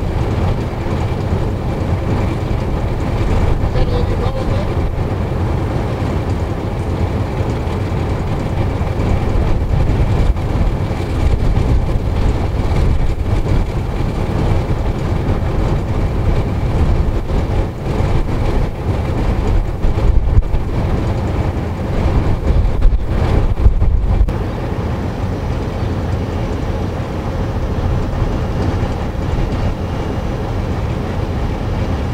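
NSW 80 class diesel-electric locomotive 8049 idling while standing still, a steady low rumble. There are a few louder swells around twenty seconds in.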